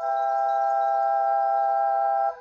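New-age ambient music: a chord of several clear, steady tones that enters all at once and is held evenly.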